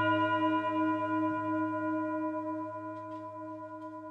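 A sustained bell-like ringing tone with several steady overtones, slowly fading away.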